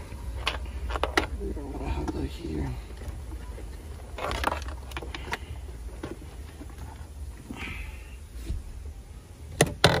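Hands working a wiring harness and plastic dash trim behind a Jeep's dashboard: scattered sharp clicks and handling noises over a steady low rumble, with a faint murmur of voice about two seconds in.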